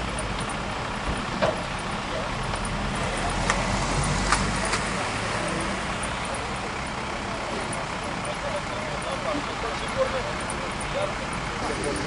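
A motor vehicle engine runs with a low rumble that dies away about five seconds in. Indistinct voices and a few sharp clicks sound over it.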